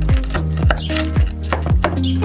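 Large kitchen knife cutting through the crisp, butter-toasted tortilla of a burrito down onto a wooden cutting board, giving short crunching strokes, over background music with a steady beat.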